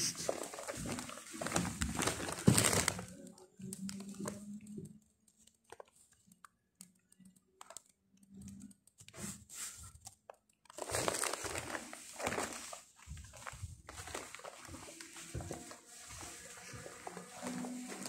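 Rustling and crinkling handling noise, in two spells: for the first three seconds or so and again about eleven seconds in, with a near-quiet gap between and softer scattered rustle after.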